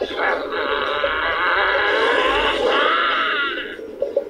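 Sustained shouting voices from the anime episode's soundtrack, wavering in pitch and lasting almost four seconds, with a dull, treble-less sound. They die away just before the end.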